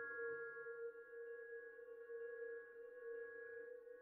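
A sustained, bell-like ringing tone in the ambient soundtrack: one strong low-middle note with several higher overtones held steady, slowly fading.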